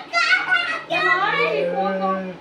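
A young child's high-pitched voice, with wavering, drawn-out calls rather than clear words.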